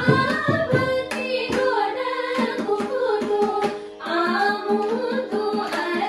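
Women singing a Carnatic devotional song, accompanied by mridangam strokes over a steady electronic sruti-box drone; the singing drops briefly just before four seconds in, then resumes.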